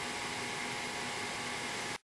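Steady background hiss of room tone with a faint underlying hum, cutting off abruptly at the end.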